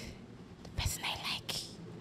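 A woman whispering a few breathy words close to a handheld microphone.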